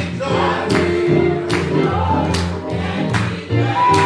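Gospel music: a church praise team singing with electric keyboard accompaniment over a steady beat, about one hit every 0.8 seconds.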